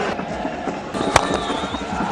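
Stadium crowd noise with one sharp crack of a cricket bat striking the ball about a second in, the shot that goes for four.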